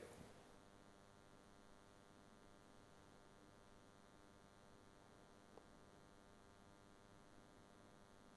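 Near silence: a faint, steady electrical hum made of many evenly spaced tones, with one tiny tick about halfway through.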